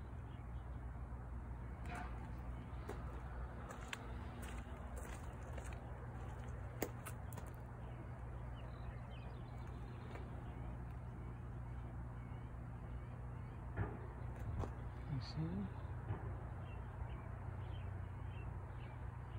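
A steady low hum with a few sharp clicks and knocks scattered through it, and faint high chirps like birds. Near the end a man briefly says 'Oh'.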